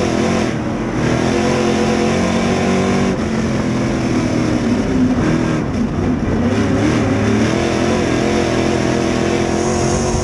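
A dirt late model's GM 602 crate V8 running at racing speed, heard from inside the cockpit. Its pitch falls and rises as the driver lifts off and gets back on the throttle, with one dip about half a second in and another around five to six seconds in.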